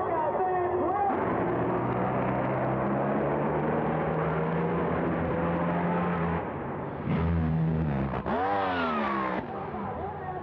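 Drag racing engines running at full throttle, a loud steady rasping noise. Near the end the sound changes and a pitch sweeps up and then back down.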